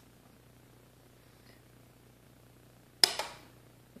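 A pulse arc jewelry welder firing once from its tungsten electrode onto a stainless steel jump ring about three seconds in: a single sharp, loud crack that fades within half a second. Before it, only a faint steady hum.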